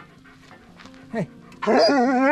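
A German Shepherd whining and yowling. It gives a short falling whine about a second in, then a louder, longer, wavering whine near the end. The dog is complaining at being tied up.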